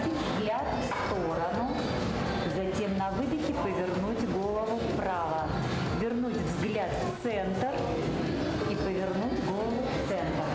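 A woman talking over background music.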